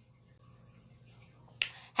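Quiet room tone, then a single short, sharp click about one and a half seconds in.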